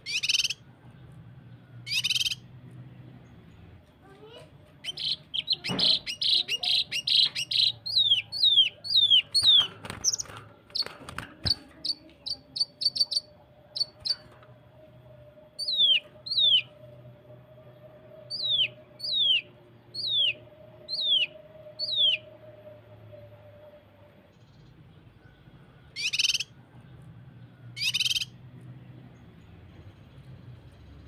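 Cucak kinoi (a leafbird) singing its rapid 'tembakan' song: sharp single calls about two seconds apart, then a dense run of fast repeated notes, then a slower string of short down-slurred whistles.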